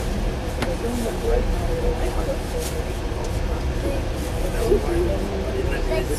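Steady low rumble of a moving passenger train, heard from inside a sleeper compartment, with indistinct voices over it and a few light clicks.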